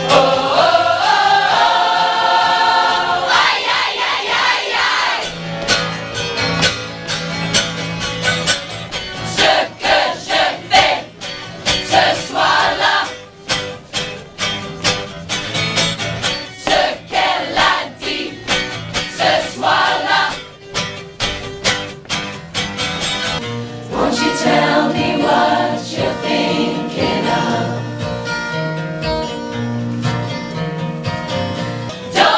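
A large choir singing together, backed by a strummed acoustic guitar, with short clipped rhythmic phrases through the middle.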